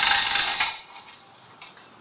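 Two-speed hand-crank cable winch's ratchet clicking rapidly as the crank is turned, stopping about two-thirds of a second in, with one more click near the end.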